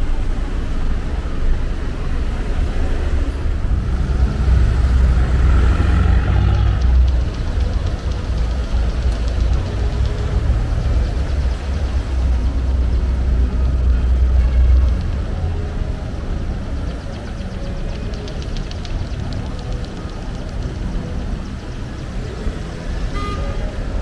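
Busy city-street traffic: cars driving past in a continuous wash of engine and tyre noise, with a heavy low rumble through the first half that then eases off.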